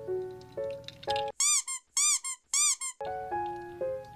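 A simple background tune of steady notes breaks off about a second and a half in for three quick, loud squeaky sound effects, each rising then falling in pitch. The tune resumes near the three-second mark.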